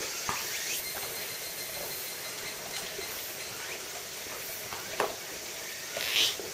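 A steady high hiss with a few faint clicks and a sharper knock about five seconds in.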